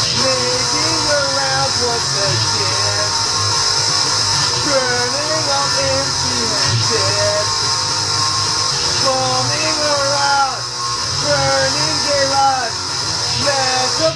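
Guitar played with a man singing along, the voice rising and falling in pitch over steady chords. The music dips briefly a couple of times near the end.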